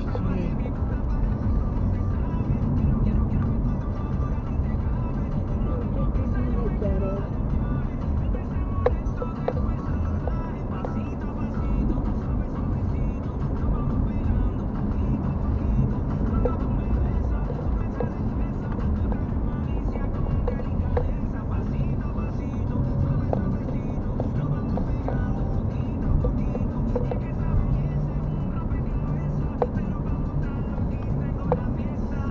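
Car driving steadily on a paved road, heard from inside the cabin: a constant low rumble of engine and tyre noise with a few faint ticks and rattles.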